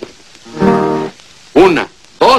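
A single chord strummed on an acoustic guitar, ringing for under a second, then a man's voice near the end.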